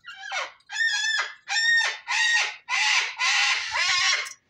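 A parrot calling loudly: a run of about six harsh squawks, each falling in pitch, the last two longer and rougher. The bird is worked up.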